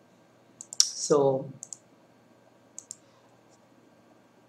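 A handful of short, sharp computer mouse clicks, several in quick pairs, scattered through a few seconds while browser tabs are switched.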